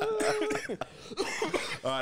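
A drawn-out 'uh', then a man coughs near the end, just before he starts speaking again.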